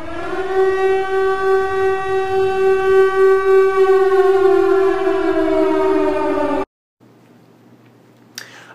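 Civil-defense-style warning siren sound effect: one siren tone that rises in, holds steady, then winds down in pitch and cuts off suddenly near the end.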